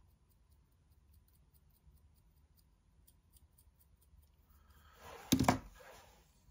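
Faint scratching of a pointed tool scoring the end of a leather-hard clay handle, then a short, louder scrape about five seconds in.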